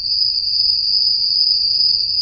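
An insect's high-pitched trill, cricket-like, held steady without a break over a faint low background rumble.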